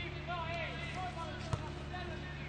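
Men's voices calling out on an outdoor football pitch, with one sharp thud of a football being struck about one and a half seconds in, over a steady low hum.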